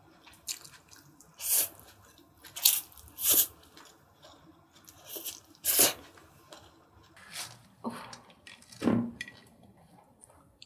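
Close-miked eating of japchae glass noodles: chewing and slurping mouth sounds in about seven short bursts, a second or so apart.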